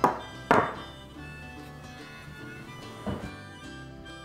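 Sharp snip of side cutters cutting through a small automotive wire at the very start, a knock about half a second later as the cutters are handled, and a lighter click about three seconds in.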